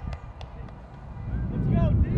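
Distant high-pitched shouts from players and spectators on an outdoor field, with a few sharp clicks early on. A low wind rumble on the microphone grows louder in the second half.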